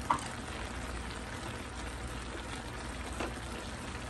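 Vegetables sizzling steadily in a hot wok, with one short sharp click just at the start.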